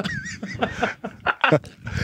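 Men laughing hard into microphones: breathy, broken bursts of laughter, with a short high wavering squeak near the start.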